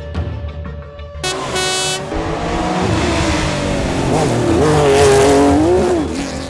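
Rally car engine revving hard and tyres squealing as the car slides through a bend, rising to its loudest about five seconds in, over background music.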